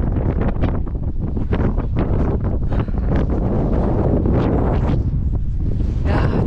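Strong wind buffeting the camera's microphone on an exposed mountain ridge: a loud, unbroken low rumble with frequent short gusty crackles.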